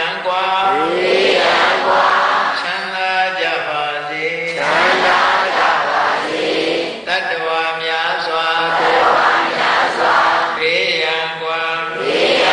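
Buddhist chanting in Pali, a steady sing-song recitation in phrases a few seconds long.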